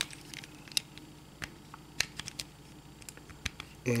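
Hard plastic parts of a Transformers Abominus combiner toy being handled, giving a handful of light, scattered clicks and taps as a tab is worked into its slot.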